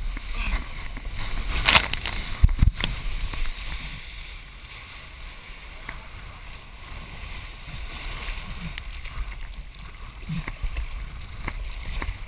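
Water rushing and splashing as a kiteboard planes through choppy sea, with wind buffeting the head-mounted camera's microphone in a steady low rumble. A loud burst of spray comes a couple of seconds in.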